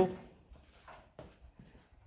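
The end of a man's spoken word, then quiet room tone with a few faint clicks.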